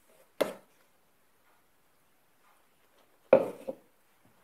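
A hand kneading stiff flour-and-water dough in a glass bowl, with two sharp knocks, about half a second in and again near the end, as the hand presses the dough against the bowl.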